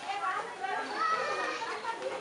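Children's voices chattering and calling in the background, several overlapping, with no clear words.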